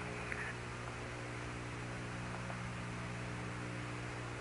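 Steady hiss and hum of the Apollo 16 lunar-surface radio voice link between transmissions, an even static with a constant low hum under it.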